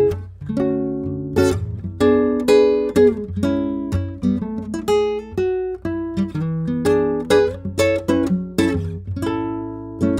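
Cordoba C7 nylon-string classical guitar played fingerstyle: a steady run of plucked chords and single notes, several a second, each left ringing.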